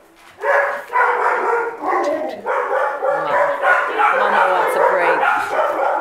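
Alaskan Malamute puppy vocalizing in a string of whines and yips, starting about half a second in and going on with short breaks.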